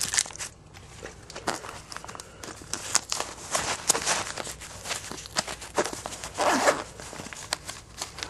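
Trading cards in plastic sleeves being handled close to the microphone: irregular clicks and rustling, with a louder scraping rustle about six and a half seconds in.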